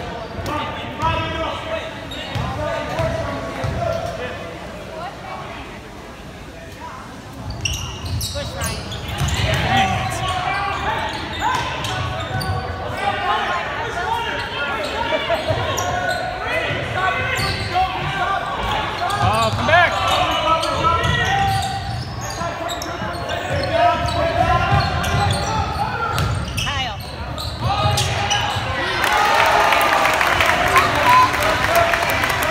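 Basketball being dribbled on a hardwood gym court during play, with players' and onlookers' voices echoing around the hall. It is a little quieter for a few seconds, then busier from about eight seconds in.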